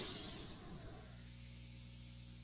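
Near silence: faint room tone with a steady low hum.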